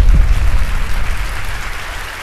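Audience applause, slowly dying away, with two low booms at the very start.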